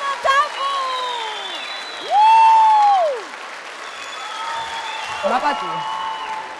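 Audience and judges applauding, with cheering voices over it and one loud, high, drawn-out cry about a second long, about two seconds in.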